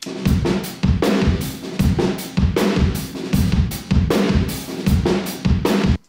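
Recorded rock drum kit heard through the front-of-kit room mic alone, unprocessed before EQ: a steady driving beat of hard kick and snare hits under washy cymbals with the room's reverb tail.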